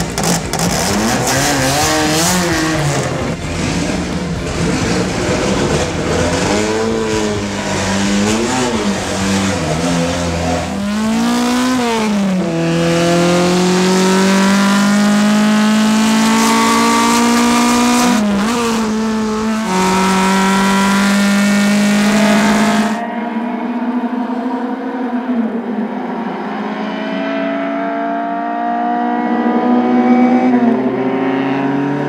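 1957 Maserati 150 GT Spider's four-cylinder engine driven hard: revs climb and drop in quick swings for the first dozen seconds, then rise in long pulls through the gears with a shift about 18 s in. About 23 s in the sound turns thinner and more distant as the engine keeps pulling steadily up in pitch.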